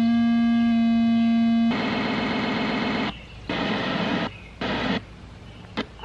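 Sound from an old portable CRT TV's speaker, fed by a digital converter box. First a steady buzzing tone, then from about two seconds in a harsher buzz that cuts out and comes back several times as the weak digital signal breaks up.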